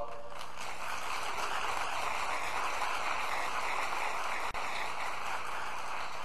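Audience applauding steadily, with a momentary dropout in the sound about four and a half seconds in.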